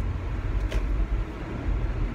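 Steady low road and engine rumble heard inside a moving car's cabin, with one brief click a little under a second in.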